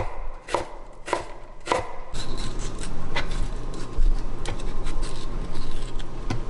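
Chef's knife dicing red onion on a wooden cutting board: three crisp chops about half a second apart, then lighter, irregular cuts.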